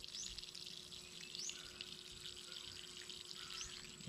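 Faint steady run of water from a gravity-fed hose filling a small dug fish pond, with three short rising bird chirps over it.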